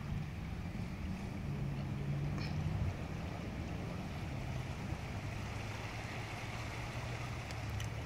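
A distant engine hum, steady and low, under a light wash of wind or outdoor noise.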